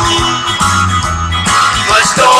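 Rock urbano song in an instrumental passage, with guitar over bass and drums and no vocals.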